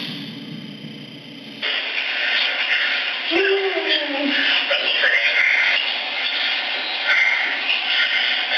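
Indistinct, muffled talk of people over a surveillance camera's thin-sounding audio. The background changes abruptly about one and a half seconds in.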